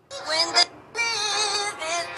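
Music: a hip-hop type beat opening with a processed, autotune-like wavering vocal melody. It starts abruptly, drops out briefly just before a second in, then comes back.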